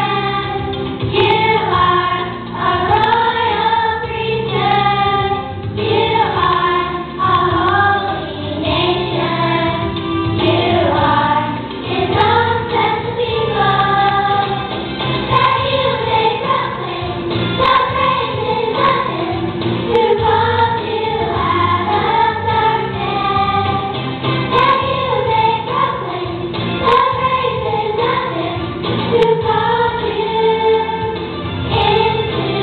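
A young girl singing a song solo into a handheld microphone, amplified, over instrumental accompaniment with steady low notes.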